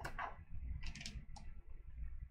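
Pages of a spiral-bound paper guidebook being turned by hand: a few short papery flicks and clicks, at the start, about a second in and again a little later.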